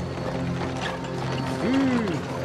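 Horse-drawn carriage pulling up: hoof clops and the rattle and creak of the wooden cart, over steady background music. Near the end there is a short call that rises and then falls in pitch.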